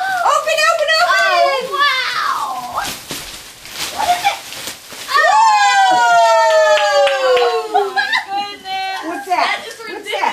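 Plastic gift wrapping rustling and crackling as a large present is pulled open, amid excited voices. About five seconds in, a voice gives a long, drawn-out 'ooh' that falls in pitch.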